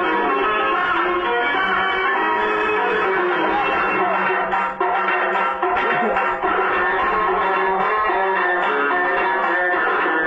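Background music led by plucked strings, playing steadily.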